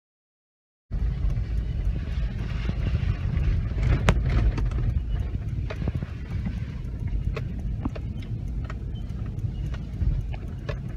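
Silent for about the first second, then the inside of a Toyota Prado's cabin while it drives along a rough, muddy dirt track: a steady low engine and road rumble with scattered sharp clicks and knocks, the loudest about four seconds in.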